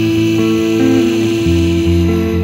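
Semi-hollow electric guitar playing in a slow song, with one note held steadily over changing low notes, between sung lines.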